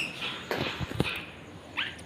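A wire birdcage being carried and set down, with a couple of dull knocks about half a second and a second in. A short rising animal call comes near the end.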